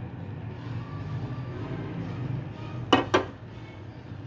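Yogurt being spooned from a bowl into a pan of curry, with two sharp clinks of the spoon against the bowl about three seconds in, over a low steady hum.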